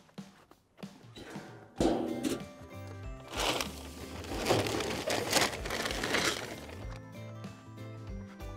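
A clank from the galvanized metal feed can about two seconds in, then about three seconds of rattling rustle as chicken feed is scooped out of it. Background music plays under it.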